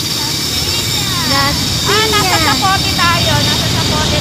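Motorcycle engine running and wind rushing past while riding in traffic, a steady low rumble, with a voice talking over it from about one second in.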